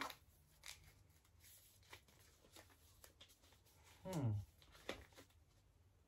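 Faint rustling and light crackling of paper instruction leaflets being handled and unfolded by hand, in small scattered bursts.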